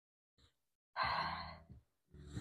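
A woman's audible breath out, a sigh-like exhale under a second long, starting about a second in after near silence.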